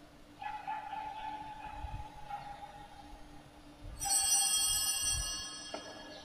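Two pitched ringing tones: a softer held tone from about half a second to three seconds, then a brighter, sharper bell-like tone that strikes suddenly about four seconds in and fades over about two seconds.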